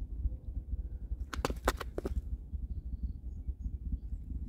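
A steady low rumble throughout, with a quick run of five or six sharp clicks or taps about a second and a half in.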